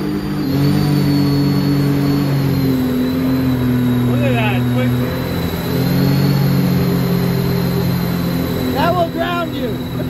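Supercharged mini jet boat's engine running under load through rapids, its pitch stepping up and down with the throttle, with a thin high whine over it. Brief shouts or laughter come in about halfway and near the end.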